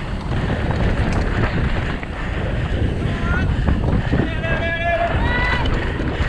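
Wind buffeting the on-board camera's microphone over the rumble and rattle of a mountain bike descending a rough dirt trail at race speed. From about three seconds in, spectators' voices shout over it.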